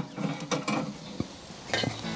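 Kamado Joe's metal accessory rack and the wok on it being lowered to the middle position: light metal clinks and scrapes, with one sharper click a little past halfway.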